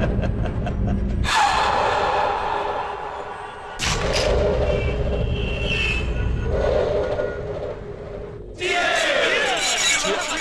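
Dramatic film background score: a low rumbling bed, broken by sudden loud swells about a second in, near four seconds and near seven seconds. A busier, brighter texture enters near the end.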